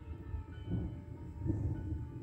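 Quiet background music: a low steady drone with a few faint held tones.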